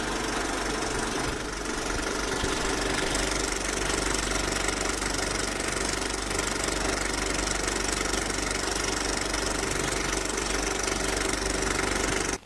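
A steady, even engine-like running noise with a low hum beneath it. There is no music or rapping.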